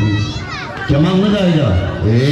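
A low voice through a microphone and loudspeaker, in long drawn-out phrases, with children's high voices in the crowd early on.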